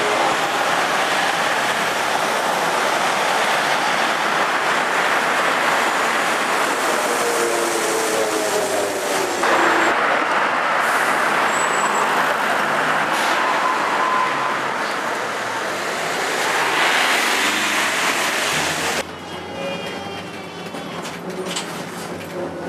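Street traffic noise as cars and a trolleybus pass close by on a wet road. About three seconds before the end it cuts to the quieter sound inside a moving trolleybus, with a faint rising whine.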